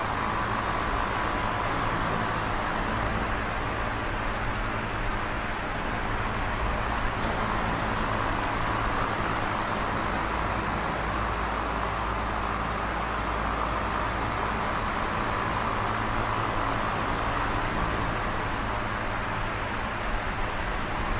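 A steady, unchanging hiss with a low hum beneath it; no distinct events.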